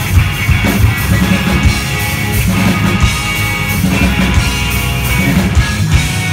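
Rock band playing live at full volume: distorted electric guitars, bass and drums with steady cymbal and drum hits, heard from within the crowd. Right at the end the drums stop on a final hit, leaving the guitars ringing.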